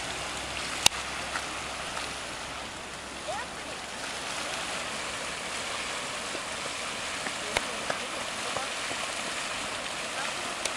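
Steady rushing hiss of water and steam from a geothermal feature, with a sharp click about a second in and another near the end.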